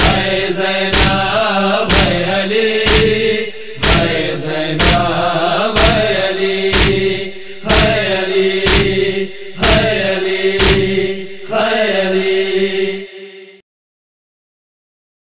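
Rhythmic matam, open-hand chest-beating slaps about once a second, over a steady wordless chanted vocal drone, closing a noha lament. The sound fades near the end and stops.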